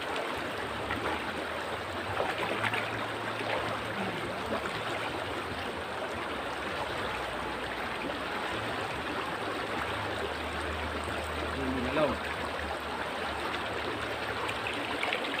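River water flowing and rushing over rocks: a steady, even wash of sound.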